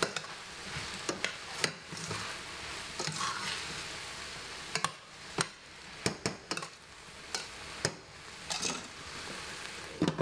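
Shredded vegetables sizzling in a stainless steel pan as a metal spoon stirs them, with a steady hiss and many sharp clinks and scrapes of the spoon against the pan, more frequent in the second half.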